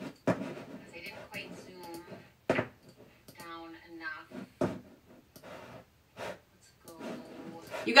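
Quieter, stray speech from a recorded video playing by mistake on the streaming device, heard under the room sound, broken by a few sharp clicks.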